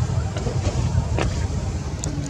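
A low, fluctuating rumble of wind buffeting the microphone, with a few faint clicks.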